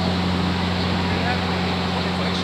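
A steady low motor-like drone with an even hiss over it, with a few faint short high calls in the background.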